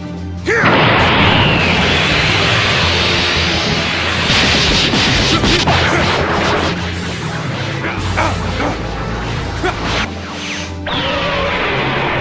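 Cartoon fight sound effects: a dense barrage of hits, crashes and whooshes over background music. It sets in suddenly about half a second in and eases briefly near the end.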